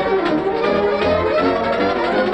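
Brass-led orchestral cartoon score, with several instruments playing at once and notes that slide up and down in pitch.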